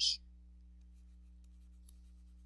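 Faint taps and scratches of a stylus handwriting on a pen-tablet screen, over a low steady hum. The end of a spoken word is heard right at the start.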